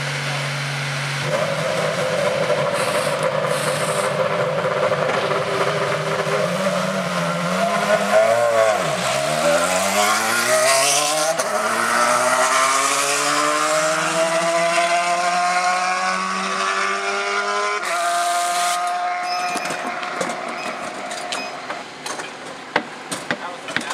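IndyCar race-car engine running at high revs. Its pitch holds steady, dips sharply about nine seconds in, then climbs steadily for several seconds.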